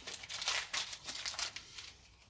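A seed packet crinkling and rustling in the hands, a quick run of dry crackles that thins out toward the end.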